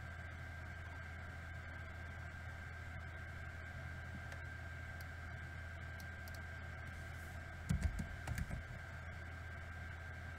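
Steady low electrical hum with a thin high whine from the recording setup. About eight seconds in, a brief cluster of computer keyboard keystrokes is heard, mostly as dull thumps.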